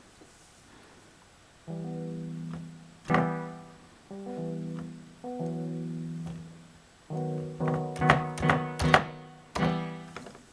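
Low, bass-like instrument notes played from a velocity-sensing MIDI keyboard through a sound module: several soft, held notes, then one hard-struck note about three seconds in, and a quick run of loud, sharply attacked notes that die away near the end. The different loudness of the notes follows how hard the keys are hit.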